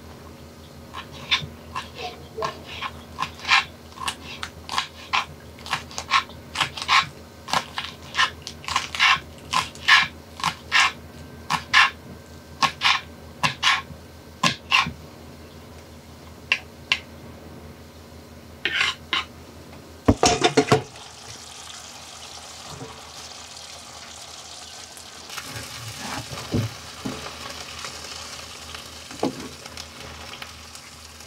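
Knife chopping green onions on a cutting board, quick sharp taps in irregular runs for most of the first two-thirds. A loud clatter about 20 seconds in, then food sizzling in a nonstick frying pan, growing louder in the last few seconds, with a few knocks of a spatula.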